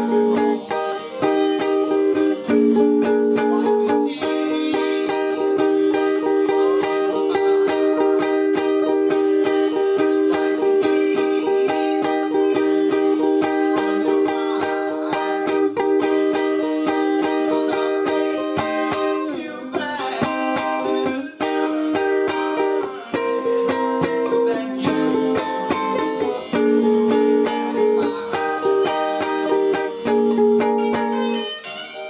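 A slow blues recording in E flat, with an electric guitar playing chords along with it: held chords over a steady beat.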